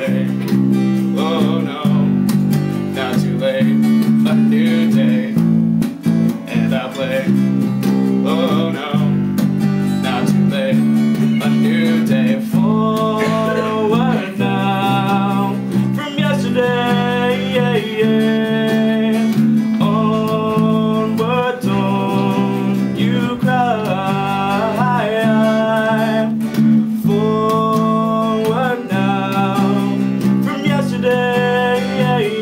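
Acoustic guitar strummed with an electric bass guitar playing along in a live duo. From a little under halfway, a voice joins in with long, wavering sung notes over the guitars.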